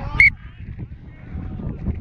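Referee's whistle blown once, a short sharp blast about a quarter second in, over low wind rumble and thuds from the running wearer.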